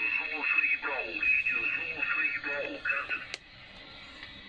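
A voice on shortwave coming through the speaker of a Trio JR-500S seven-tube receiver, thin and narrow-sounding over steady band hiss. About three and a half seconds in it stops with a sharp click, leaving only hiss.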